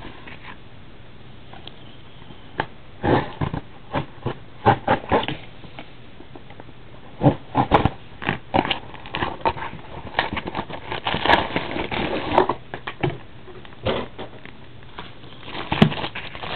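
Plastic shrink wrap on a sealed trading-card box being cut and peeled off by hand: irregular crinkles and scrapes, coming in clusters.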